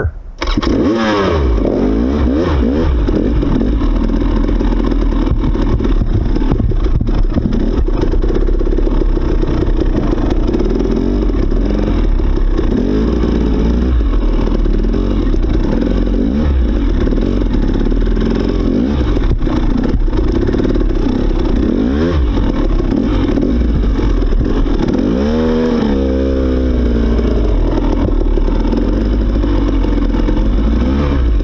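Dirt bike engine pulling away about half a second in and riding on over rough trail. The revs rise and fall constantly with the throttle and gear changes, with a sharp rev up and down near the end.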